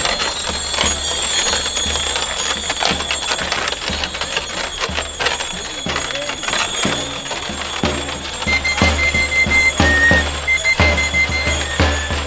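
Crowd chatter mixed with scattered clicks and knocks, then from about eight seconds in a drum starts beating steadily, several thumps a second, under a high whistle-like pipe playing held notes: the pipe-and-drum music of a romería procession.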